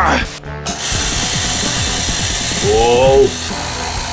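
Compressed air hissing from a quick coupling on an air compressor's outlet, with a rapid mechanical rattle underneath: the coupling is leaking at its threads, which were not sealed with Teflon tape. The hiss sets in about a second in, and a man's voice exclaims near the end.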